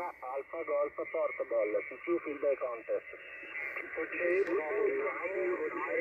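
Voice of a distant ham station received on a shortwave transceiver over single sideband on the 40 m band: thin, narrow-band speech with no bass, with a faint steady whine in the upper part of the voice range.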